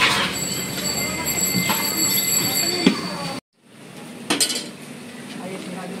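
Steel bowls and serving spoons clinking over a hubbub of voices and street noise. The sound drops out briefly about three and a half seconds in, then resumes with a sharp clack.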